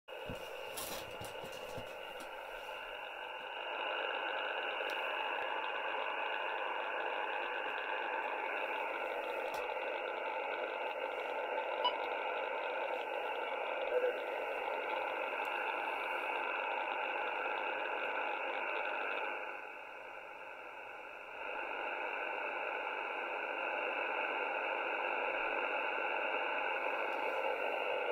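Icom IC-R75 shortwave receiver in upper-sideband mode giving a steady, narrow-band static hiss on an HF aviation channel between transmissions. There are a few short clicks at the start, and the hiss drops briefly about twenty seconds in.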